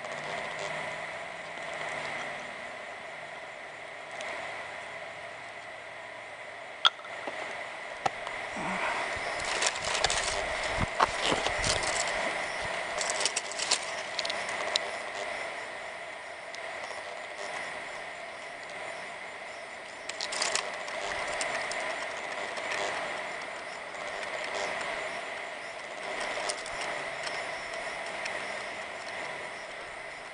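Breaths blown in slow, repeated puffs into a dry palmetto-frond tinder bundle to bring a bow-drill ember up to flame, with the dry frond crackling and rustling in the hands. A steady high hum runs underneath.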